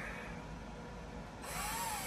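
Small electric drill starting up about a second and a half in, its whine rising and then dipping in pitch as it widens a small drilled hole.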